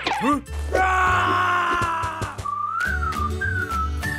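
Cartoon background music under a character's vocal cries: short grunts, then a long strained cry held for over a second and falling slightly, followed by a wavering whistle-like tone near the end.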